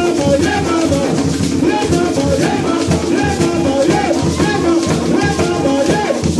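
Several barrel hand drums playing a steady rhythm, with a rattling shaker on top and a group of voices singing together.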